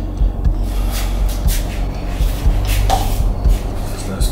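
Low, steady background music drone with a few soft knocks and rustles of handling scattered through it.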